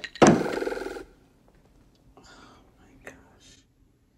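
A loud, drawn-out vocal sound lasting about a second near the start, followed by faint whispered voice.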